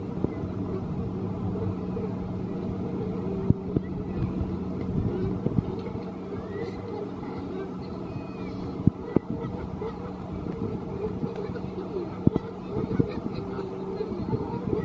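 Amusement-park background heard across a lake: a steady low hum, scattered sharp clicks and knocks, faint distant voices, and a few short bird calls about halfway through.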